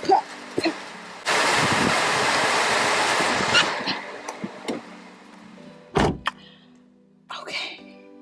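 Rain noise that comes in suddenly about a second in and dies away over a few seconds, then a car door shutting with a heavy thunk about six seconds in, with a smaller knock just after.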